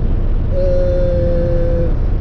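Steady road and engine rumble inside the cab of a moving pickup truck. About half a second in, a man's long held hesitation "eee" starts and holds one pitch for over a second.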